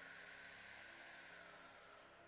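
A person drawing a long, slow sipping breath in, heard as a faint, steady airy hiss that slowly fades.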